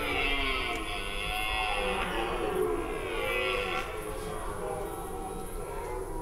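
Several red deer stags roaring at once during the rut, overlapping calls that rise and fall in pitch, some harsher and brighter than others: the stags' chasing calls (Sprengruf).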